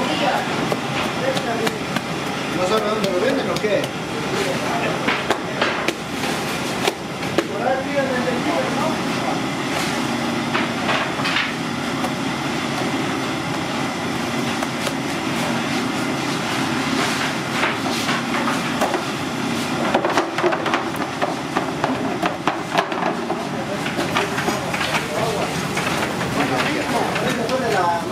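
Busy bakery workroom clatter: frequent knocks and clicks of metal sheet pans, racks and hands on dough over a steady background din, with indistinct voices.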